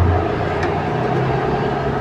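Steady background hum and noise with no distinct events: a constant low hum with a couple of faint steady higher tones over an even hiss.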